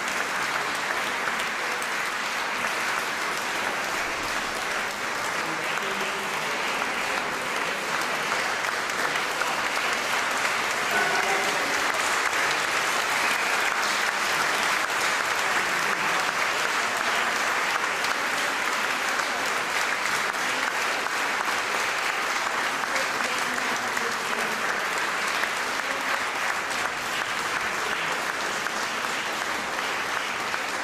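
Audience applauding steadily and continuously, with a few voices mixed into the clapping.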